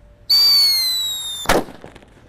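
Whistling thunder firecracker going off: a shrill whistle that falls slightly in pitch for just over a second, cut off by a single loud bang.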